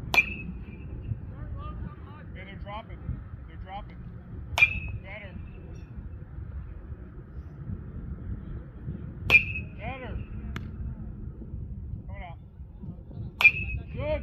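Metal baseball bat hitting pitched balls in a batting cage: four hits, about four to five seconds apart, each a sharp crack followed by a short ringing ping.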